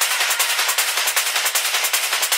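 Hard techno with no bass drum: a fast, evenly spaced run of hissy, noisy percussive hits.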